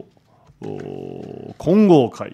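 A man speaking Japanese into a microphone. About half a second in he holds one drawn-out syllable on a steady pitch for nearly a second, then voices a syllable that rises and falls near the end.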